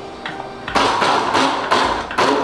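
Countertop blender motor starting about three-quarters of a second in and running in short bursts as it chops a jar tightly packed with raw vegetables and greens.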